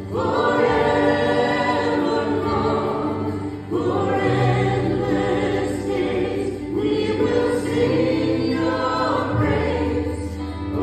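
A praise song sung by a worship leader with acoustic guitar and a congregation singing along, in long held phrases that start afresh about every three seconds.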